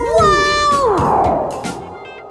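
Cartoon werewolf's howl: a pitched call that glides down and stops about a second in, over background music with a steady beat. A falling whoosh follows as the howl ends.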